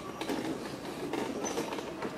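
Wheelchair wheels rolling over cobblestones, a continuous rattle of small irregular knocks and jolts.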